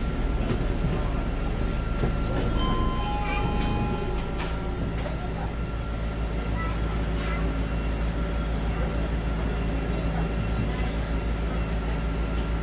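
Cabin noise inside an ST Linkker LM312 battery-electric bus: a steady low rumble with a faint steady high whine, and no engine sound. A short run of electronic beeps comes about three seconds in.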